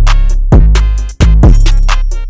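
Instrumental trap-style hip-hop beat: heavy sub-bass and drum-machine kicks with falling pitch under ticking hi-hats. A little past halfway the whole beat cuts out for an instant, then comes back in on a kick.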